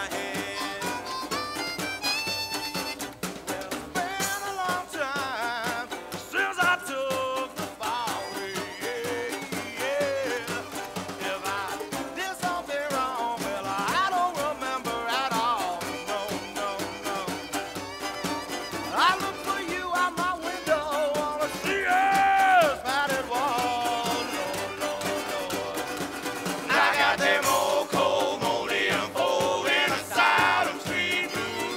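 Live acoustic string band playing an instrumental passage, a fiddle carrying a gliding melody over upright bass and guitar accompaniment.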